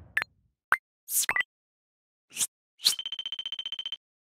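Animated logo sound effects: a few short swishes and pops, then near the end a fast, even stutter of beeps that cuts off suddenly.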